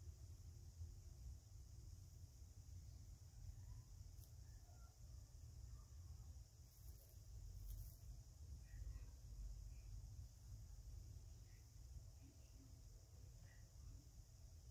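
Near silence: faint steady room hum with a couple of faint brief clicks about seven and eight seconds in.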